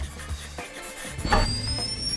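Short logo-intro music sting over a low bass line. About a second in, a hit is followed by a high-pitched rising whoosh.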